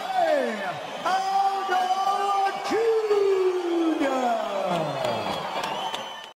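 A fight announcer's voice proclaiming the winner in long, drawn-out shouted words whose pitch falls away at the end of each, over crowd noise.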